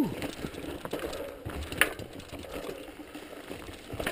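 Mountain bike riding over a rocky trail: tyres rolling on stones and a light mechanical rattle from the bike, with a sharp knock a little under two seconds in.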